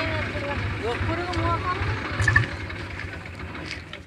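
An engine running steadily with a low, evenly pulsing rumble, with indistinct voices over it; the sound cuts off suddenly near the end.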